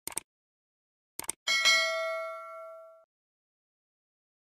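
Subscribe-button animation sound effects: a pair of quick mouse clicks, then two more clicks and a notification-bell ding. The ding rings for about a second and a half and cuts off sharply.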